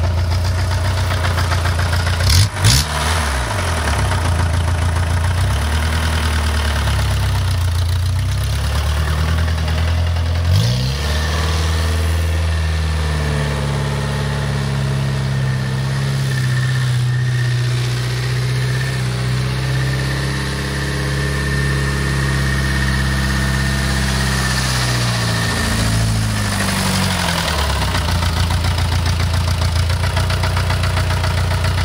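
Homemade tractor's engine idling, with a sharp bang about two and a half seconds in. About ten seconds in it revs up and runs at a steady higher speed while the tractor is driven, then drops back to idle near the end.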